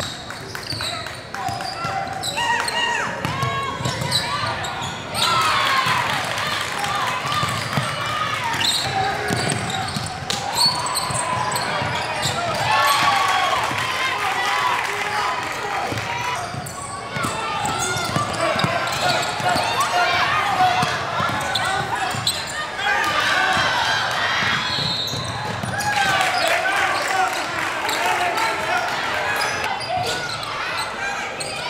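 Basketball dribbled on a hardwood gym floor during play, amid the voices of players and spectators.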